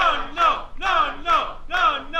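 Voices calling out in a rhythmic chant, a repeated rising-and-falling cry about two to three times a second.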